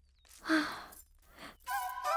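A woman sighs once, a short breathy exhale about half a second in. Near the end a held music chord comes in.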